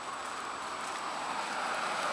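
Outdoor street background noise: a steady hiss that slowly grows louder.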